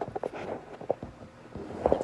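Handling noise from a phone being gripped and moved: fingers rubbing near the microphone, with a few soft knocks and a sharper one near the end.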